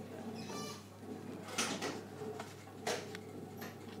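Hands pinning a welt onto denim fabric: soft fabric rustling with a few short clicks and taps, over a low steady hum.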